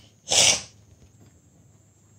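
A person sneezing once, a short noisy burst about half a second long just after the start.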